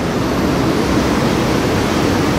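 Loud, steady running noise of a Eurotunnel shuttle train travelling through the Channel Tunnel, heard from inside the wagon.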